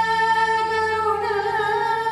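Woman singing a slow melodic line in raga Charukesi over a steady held note, her voice turning into wavering ornaments a little past halfway.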